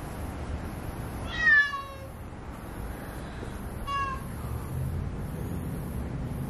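A ragdoll kitten meowing twice: a loud call about a second in that falls in pitch, then a short, fainter meow about four seconds in.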